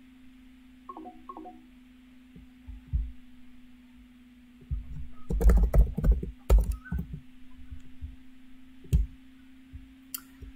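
Clicks and knocks of a computer keyboard and mouse being handled, bunched together around the middle with a single click near the end, over a steady low electrical hum. A brief two-note electronic tone sounds about a second in.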